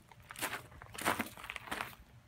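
Footsteps on gravel, a few steps about half a second apart.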